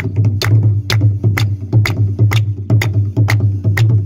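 Tabla played by hand in a steady, regular rhythm, with sharp strokes about two to three a second over a steady low hum.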